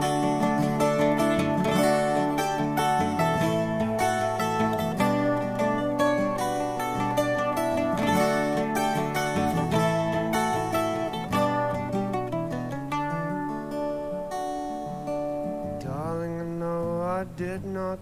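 Acoustic guitar strummed with a mandolin playing over it in an instrumental break of an acoustic folk song. Near the end a singing voice comes back in.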